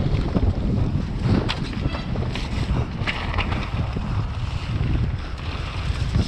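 Wind buffeting an action camera on a downhill mountain bike riding fast down a muddy dirt trail, over a steady rumble of tyres on the ground. Short clicks and clatters from the bike rattling over bumps come through now and then.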